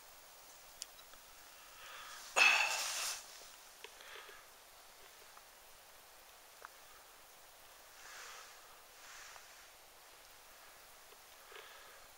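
Quiet night-time background with a few isolated faint crackles from a burning fire log. About two and a half seconds in, a person makes one short, loud breath noise through the nose and throat, and softer breaths follow later.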